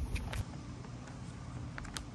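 Faint, steady outdoor background noise with no clear single source. A low rumble fills the first half-second, and there is a brief click near the end.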